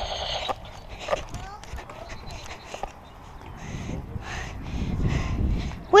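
Scattered small knocks and rustles with a low rumble, the handling and movement noise of a carried camera outdoors.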